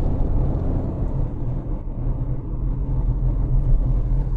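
Car driving in traffic, heard from inside the cabin as it moves off from a traffic light: a steady low rumble of engine and road.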